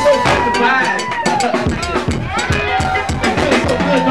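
A live funk band playing, with the drum kit's kick and snare strokes keeping a steady beat under a voice.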